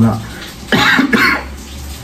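A man coughs: two short rough bursts close together, about a second in.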